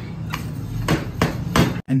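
Oil seal driver knocked down a motorcycle fork's inner tube, metal striking metal about four times in two seconds, seating the fork's metal slide bushing and washer in the outer tube. A steady low hum runs underneath.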